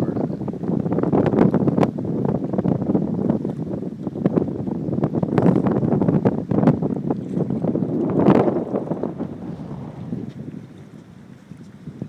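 Wind buffeting the microphone in loud, uneven gusts, with one strong gust about eight seconds in, easing off near the end.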